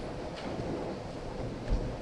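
Steady low rumbling room noise of a large hall picked up through the microphone, with a soft low thump near the end.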